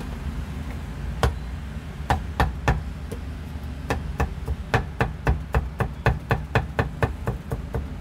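Steel meat cleaver chopping meat on a thick round wooden chopping board: one chop, then three, then a steady run of about four chops a second.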